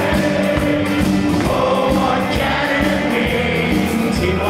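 Live band with guitars and drums playing a song while a large crowd sings along with the vocalist.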